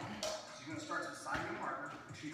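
A voice talking, with short pauses between phrases.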